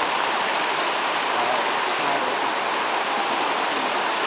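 Shallow stream water running over rocks: a loud, steady rush that does not change.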